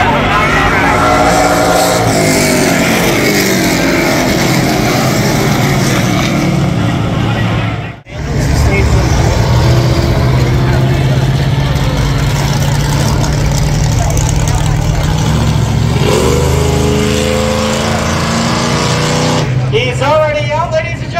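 Several race car engines running hard on a short oval, cars passing with their engine notes rising and falling as they go by. The sound cuts out briefly about eight seconds in.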